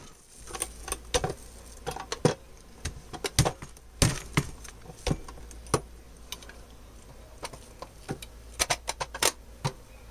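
Handling noise of metal-handled carpet sweepers being moved and set down side by side: irregular clicks, knocks and rattles, the loudest about four seconds in and a quick run of clacks near the end.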